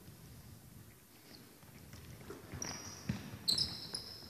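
Sneakers squeaking on a hardwood basketball court, with a few thuds of the ball, as players shuffle and pass. Quiet at first; the short high squeaks and thuds begin about halfway in.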